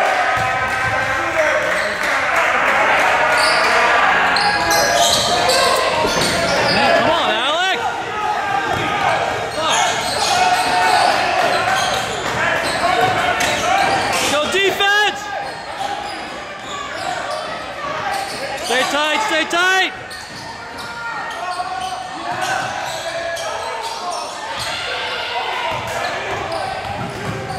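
A basketball bouncing on a hardwood gym court, with sneakers squeaking on the floor several times, over spectators and players calling out, all echoing in a large gymnasium.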